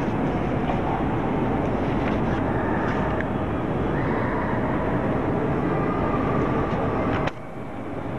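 Steady, dense crowd noise from a large audience, cut off abruptly about seven seconds in.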